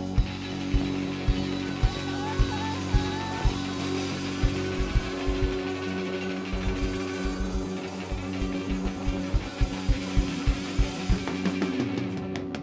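Live rock band playing an instrumental passage: electric guitars and keyboard holding sustained chords, a guitar lead line winding through the first few seconds, over a steady drum-kit beat with about two bass-drum hits a second.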